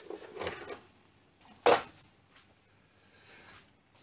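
Light handling noise of metal parts on a mini lathe's bed, then one sharp knock a little before halfway through.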